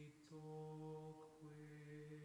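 A single low male voice softly chanting slow, long-held notes, stepping between a few pitches with a brief breath between phrases.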